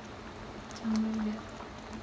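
Broth boiling in a stainless-steel electric hot pot, a steady bubbling hiss, with a brief hummed "mm" from a person about a second in.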